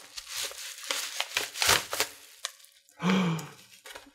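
A torn-open paper padded mailer crinkling and rustling as hands pull it apart, in a run of short, irregular crackles.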